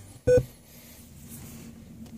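A single short electronic beep from a Snap-on Verus Pro scan tool, about a quarter-second in: the tool's touchscreen beep during menu selection.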